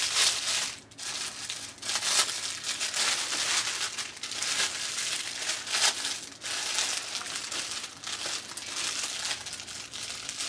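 Clear plastic packaging bag crinkling and rustling in uneven spurts as it is handled and worked open.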